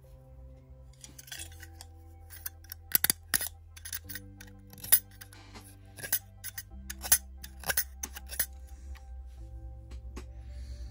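A thin wooden stick cut with a metal blade cutter: about a dozen sharp clicks and snaps between about two and a half and eight and a half seconds in, over soft background music of held chords.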